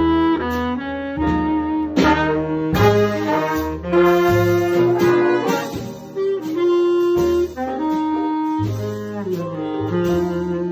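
A jazz big band playing, with a featured baritone saxophone in front of saxophones, trombones and double bass. Several long held notes ride over a moving bass line.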